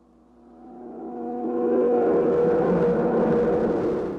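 A droning hum from a film soundtrack that swells up over about two seconds, holds steady, then cuts off abruptly near the end.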